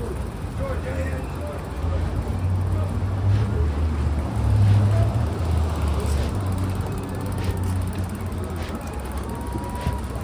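City street ambience: a low rumble of road traffic, loudest about halfway through, with faint voices of people nearby.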